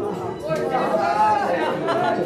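Several voices chattering in a classroom over a Mewati song playing from the classroom screen.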